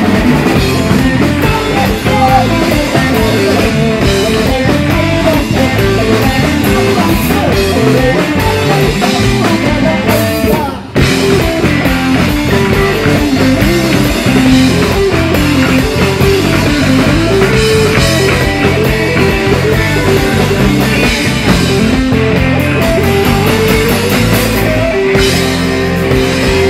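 Live rock band playing loud and continuously: electric guitar, electric bass and drum kit. The music drops out for a split second about eleven seconds in, then comes straight back.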